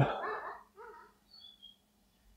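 The end of a man's spoken question dying away in a reverberant church, followed by a few faint, brief sounds and little else.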